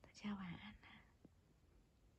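A woman's soft whispered voice saying a short phrase, under a second long, followed by a few faint clicks.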